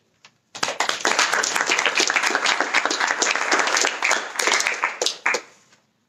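Small audience applauding, starting about half a second in and dying away near the end.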